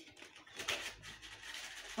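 Faint rustling and scraping as a box of coloured pencils is handled and opened, loudest about half a second to a second in.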